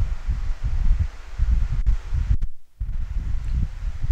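Low, unsteady rumble of wind buffeting the microphone, cutting out briefly a little past halfway. No distinct sound from the lifter being pulled stands out.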